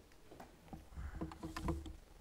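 Soft clicks and knocks of handling at a lectern, picked up by its microphone over a low electrical hum. They come thickest in the second half.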